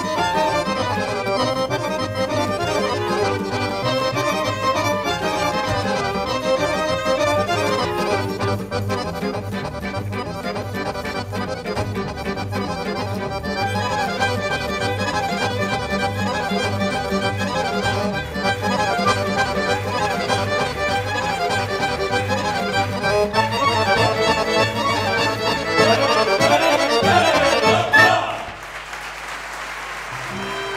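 Accordion-led traditional folk dance music with a steady, even bass beat. It swells to a loud final flourish and cuts off sharply near the end.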